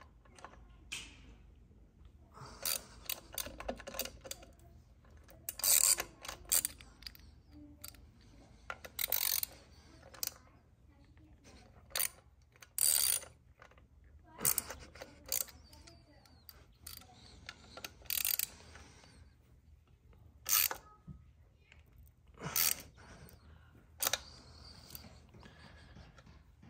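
Small hand ratchet with a bit clicking in short bursts as screws are snugged down, with pauses between the strokes.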